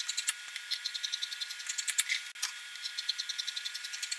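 Scissors cutting lengthwise through a cotton blouse panel in a quick run of small snips and clicks, several a second, with a few louder ones. A steady air-conditioner hum runs underneath.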